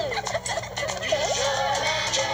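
Squeaky, warbling cartoon-style vocal chatter, its pitch rapidly sliding up and down, heard through a TV speaker.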